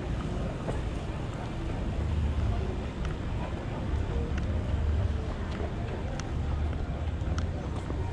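Wind rumbling on the microphone over outdoor street ambience, uneven and low, with a few faint clicks scattered through it.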